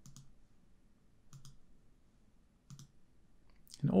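Faint computer mouse clicks, about four, spaced a second or so apart.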